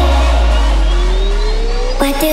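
Trap remix music: a long, heavy sub-bass note holds under a synth sweep rising steadily in pitch, a build with no drum hits.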